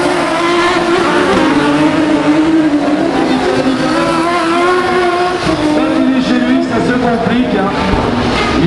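Several autocross race cars running hard at high revs on a dirt circuit, their engine notes wavering up and down in pitch as they lift and accelerate through a bend.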